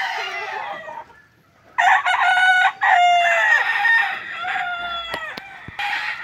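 Gamecocks crowing: one crow trails off within the first second, then after a short pause a second, louder crow starts about two seconds in and falls away in pitch at its end, with fainter calls after.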